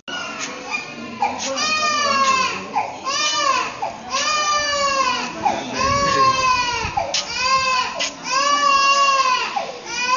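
A baby crying: a string of wails starting abruptly, each rising then falling in pitch, about one a second.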